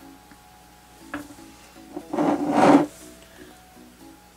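A stretched canvas sliding briefly across a wooden tabletop as it is shifted and turned, a short rough scrape, with a light click about a second before it. Soft background music plays underneath.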